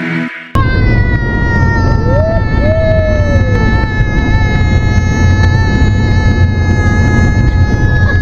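A young girl holding one long, high, steady vocal note over the low road rumble inside a moving passenger van; a second voice swoops briefly up and down about two seconds in. Background music cuts off half a second in.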